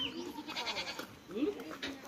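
A goat bleating, with people's voices also heard.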